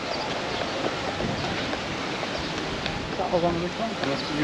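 Wind rushing steadily on the camera microphone, with people's voices faint in the background and a man starting to speak near the end.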